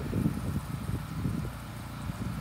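Irregular low rumble of wind buffeting the microphone, with no water spray running.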